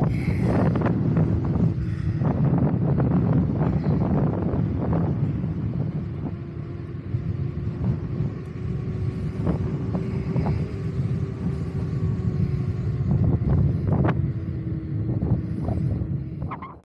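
Electric unicycle riding along an asphalt road: steady wind and tyre rumble with scattered short knocks, and a faint steady whine under it.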